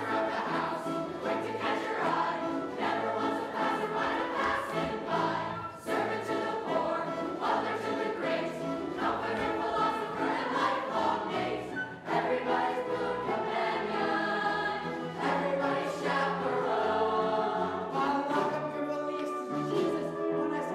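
A stage-musical cast singing together as a chorus over instrumental accompaniment, many voices at once with no break.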